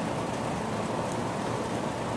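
Large fan running, a steady even rushing noise with no change.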